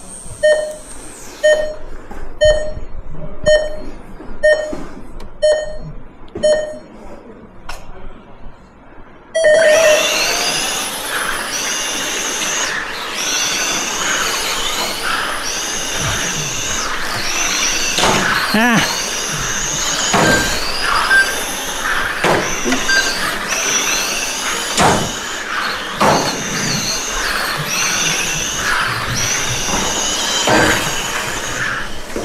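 Race timing system sounding a countdown of short beeps, about one every two-thirds of a second. After a short pause a longer start tone sounds. Then several 1/12-scale GT12 electric pan cars race, their motors whining loudly and rising and falling in pitch with throttle.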